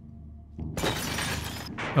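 A car's side window being smashed in: glass shatters suddenly about three quarters of a second in and crashes on for about a second.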